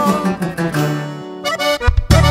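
Norteño band playing live: button accordion and guitars ring out and die away, then the accordion and guitars start up again about a second and a half in, leading the band back in.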